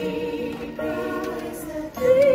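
A choir singing held notes with musical accompaniment, with a short break near the end.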